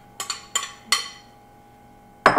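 Glass clinking against glass about four times in the first second as chopped cherry tomatoes are tipped from a small glass bowl into a glass mixing bowl, each knock ringing briefly. Then only a faint steady tone.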